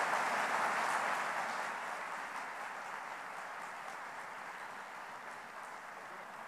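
Audience applauding, loudest at the start and slowly dying down.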